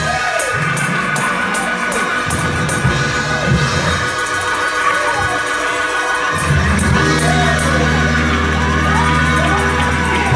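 Live church worship music with the congregation cheering and shouting over it. About six seconds in, a low held bass chord comes in under the music.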